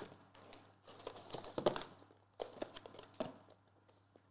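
Faint crinkling and rustling of a trading-card box's cardboard and wrapper being handled and opened by hand, in short scattered rustles and small clicks, the loudest near the middle.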